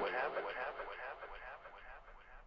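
The tail of a spoken-word vocal sample running through an echo/delay effect: a short fragment of voice repeats about five times a second, fading steadily away.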